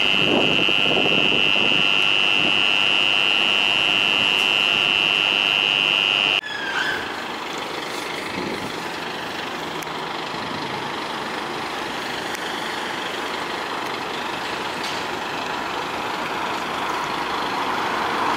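A loud, steady high-pitched electronic tone, like a continuous alarm, cuts off suddenly about six seconds in. After it comes the even noise of street traffic and idling vehicles, growing a little louder near the end.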